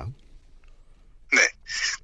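Speech only: a short pause, then a single brief spoken 'ne' (yes) about a second and a half in.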